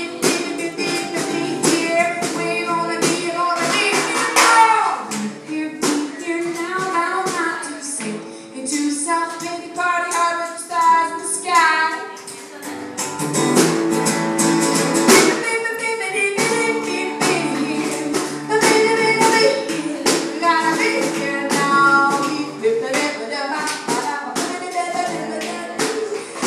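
Live acoustic jam: a woman singing with acoustic guitar accompaniment while a drummer keeps a steady beat on a snare drum.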